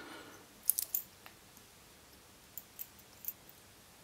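Small, sharp clicks of a metal hackle plier being handled and clamped onto a stripped peacock quill at the fly-tying vise: a quick group of three about a second in, then three more near the end.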